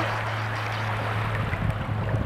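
Shallow waves washing up a shell-strewn shore: a steady rush of water, with some low rumbling near the end.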